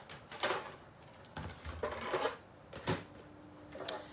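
Scattered knocks and clicks as a guillotine paper trimmer and paper are handled and set down on a craft table, the sharpest click about three seconds in.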